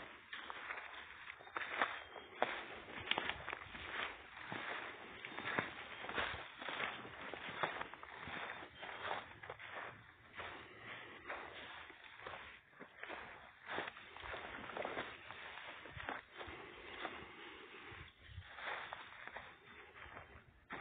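Footsteps walking over dry leaf litter and dead grass, a steady run of short irregular rustling steps.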